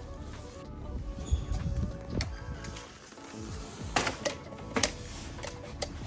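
Background music, with several sharp clicks and knocks from a keypad door lock and lever handle as a door is unlocked and opened; the loudest clicks come about four and five seconds in.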